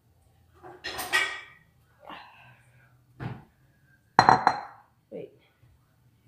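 Dishes and cutlery being handled while cereal is made: a few separate knocks and clinks of a bowl and spoon, the loudest and most ringing about four seconds in.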